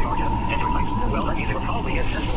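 Indistinct, muffled speech over a steady low rumble, with a thin steady whine held throughout.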